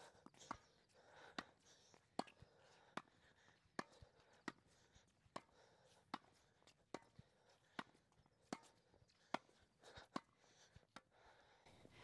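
Tennis rackets volleying a ball back and forth without a bounce. The strings strike the ball with a short, sharp pop about every 0.8 seconds, more than a dozen hits in a steady rally.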